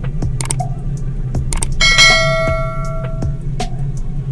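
Sharp clicks, then a bright bell-like ding about two seconds in that rings for over a second: the sound effect of a subscribe-button animation being clicked. It plays over a steady low hum.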